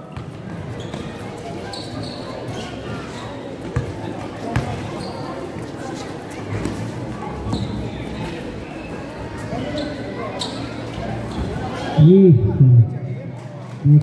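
A basketball bouncing on a concrete court during play, a few sharp knocks over a steady hum of spectators. Near the end a man's voice cuts in loudly.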